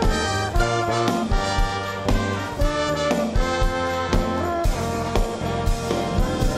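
Live church orchestra with violins playing an instrumental piece over a steady beat of about two strokes a second.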